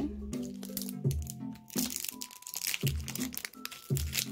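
Foil wrapper of a Pokémon booster pack crinkling as it is handled and pulled at to open it, mostly in the second half, over background music.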